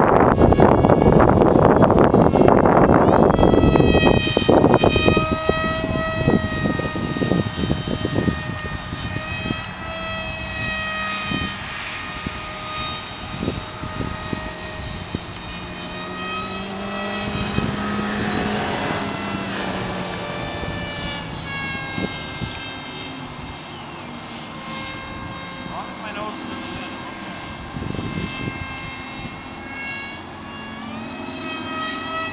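Radio-controlled F-22 model airplane in flight, its motor giving a high, steady whine that rises and falls slightly in pitch as the plane manoeuvres. For the first few seconds wind buffets the microphone with a loud rumble.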